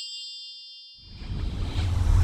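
Logo sound effect: a bell-like chime rings out and fades away, then about a second in a deep whoosh with a heavy low rumble swells up, growing louder toward the end.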